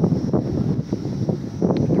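Wind on the microphone: a dense, low rumbling noise.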